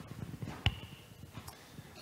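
Faint handling noise and soft knocks from a handheld microphone being passed to an audience member, with one sharp click about two-thirds of a second in.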